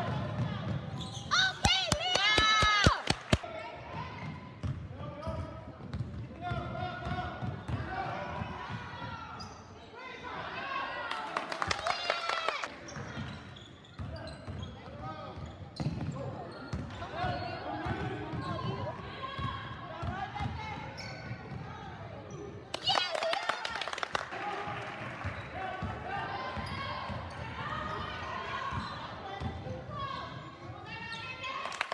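Game sounds in a school gymnasium: a basketball bouncing on the hardwood floor, spectators' voices, and several stretches of high, sharp squeaks from players' sneakers on the court, all echoing in the hall.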